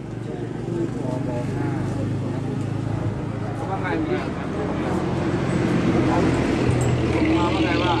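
A motor vehicle's engine running steadily, getting louder from about halfway through, under people talking.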